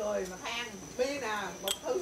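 Indistinct conversation among several people at a dinner table, with a steady faint high-pitched tone underneath and a single sharp click near the end.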